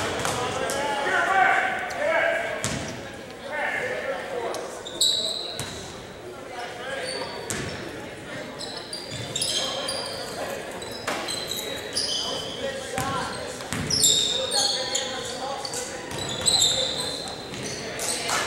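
Basketball game sounds in a gym: the ball bouncing on the hardwood court, many brief high sneaker squeaks, and players' indistinct shouts, all echoing in the large hall.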